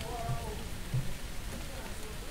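Steady rain falling on a street, with faint voices in the background and two short low thumps about a third of a second and a second in.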